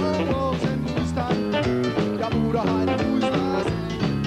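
Live rock band playing an instrumental dance section: electric guitar with sliding, bent notes over a steady beat of drums and bass.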